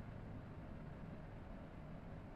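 Faint, steady background room noise with no distinct sounds.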